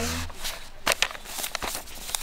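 A few short light taps and paper rustles from hands pressing on and moving across the pages of a paperback colouring book.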